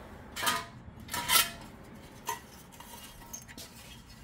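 A few light metallic clinks and rattles of loose pieces of cut-off body sheet metal being picked up and handled, the loudest a little over a second in.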